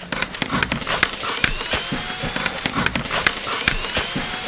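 A cordless drill and then a jigsaw cutting through the plastic bottom of a trash can: a continuous rattling grind with irregular clacks, and a motor whine that rises in pitch twice.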